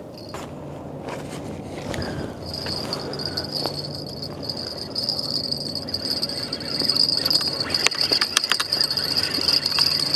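A steady, high, single-pitched insect trill, cricket-like, sets in about two and a half seconds in and carries on, over a faint low hum. Light clicks and rustles of fishing rods and line being handled come and go, growing busier near the end.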